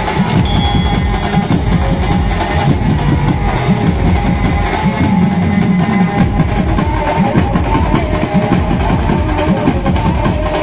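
Maharashtrian benjo band playing live: a steady, dense beat on large bass drums and hand drums under a melody line.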